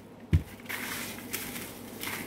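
A red plastic bucket gives one low thump as it is tipped, then a gloved hand works through pork pieces packed in coarse kosher salt inside it: a gritty, crunching rustle of salt and meat.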